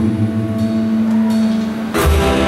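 Live rock band of electric and acoustic guitars, bass guitar and drums playing an instrumental passage between sung lines, with a long held note. The full band comes in louder right at the end.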